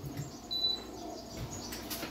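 Quiet handling sounds and light knocks as a stainless gooseneck kettle is lifted off the stove, with one short high chirp about half a second in.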